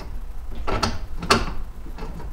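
Key going into and working the lock on a Swagman truck-bed bike rack's locking bar: a few small sharp metal clicks and rattles, the loudest just past halfway.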